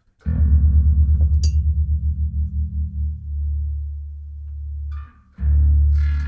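Electric bass guitar's low E string, detuned down to D, played through the amp: a fast run of repeated picked notes for about three seconds, then a note left ringing, then one more low note struck near the end. The heavy-gauge string at reduced tension gives a preview of how a lighter-gauge string would sound.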